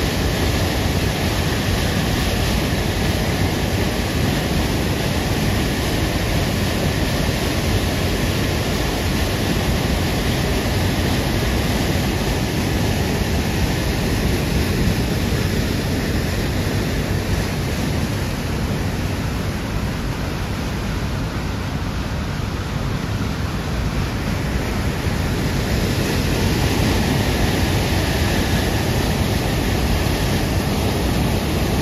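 Whitewater rushing over and between boulders at a small river waterfall and rapids: a loud, steady rush of water that eases slightly about two-thirds of the way through.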